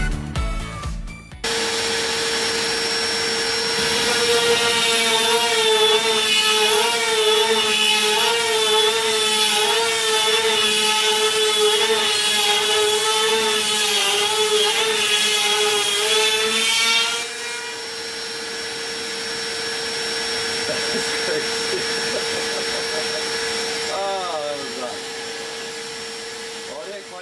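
CNC router spindle at about 14,000 RPM driving a 1.5-inch two-flute surfacing bit through solid oak: a steady whine starts about a second and a half in. From about four seconds to seventeen seconds the bit cuts the wood, adding a loud rasping hiss and a wavering pitch as the load changes. After that the spindle keeps whining under a lighter cut.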